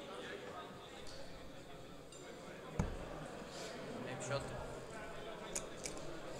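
Murmur of a crowd talking in a large hall, with a dull thud about three seconds in and short light clicks near the end as darts strike and are pulled from a bristle dartboard.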